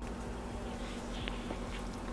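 A faint steady low buzzing hum, with a few soft light ticks.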